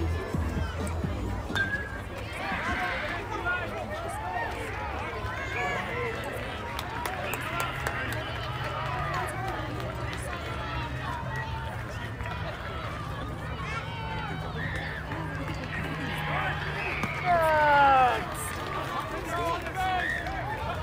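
Scattered voices of players and spectators calling out across a youth baseball field over a steady low hum. About seventeen seconds in, one voice lets out a loud call that falls in pitch.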